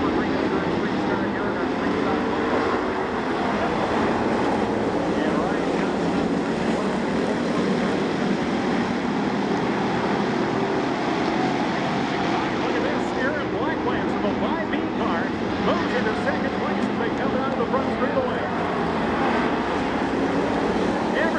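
A field of WISSOTA Street Stock cars racing on a dirt oval, their engines running hard together in one steady, loud din.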